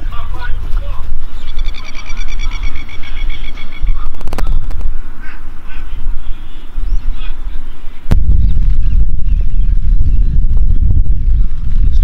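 Wind buffeting the microphone with a heavy rumble, jumping louder about eight seconds in. About two seconds in, a bird gives a rapid chattering call of quickly repeated notes, and there is a single sharp click near the middle.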